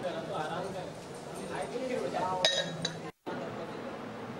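Indistinct voices of people talking in a room, with a brief high-pitched clink about two and a half seconds in. The sound drops out for a split second just after three seconds, where the shot changes.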